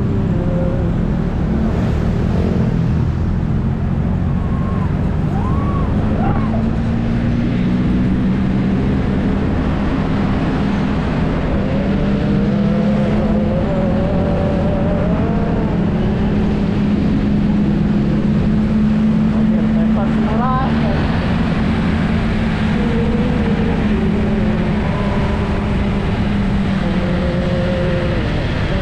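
Motorbike engine running steadily under way, with road and wind noise, heard from the rider's seat in moving traffic.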